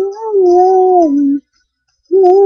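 A girl singing unaccompanied, holding one long note that wavers, rises a little and then falls in pitch before breaking off about a second and a half in.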